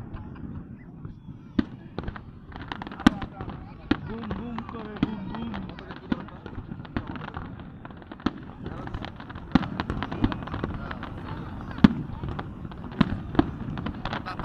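Fireworks display: sharp bangs and crackles of bursting shells at irregular intervals, with background crowd voices.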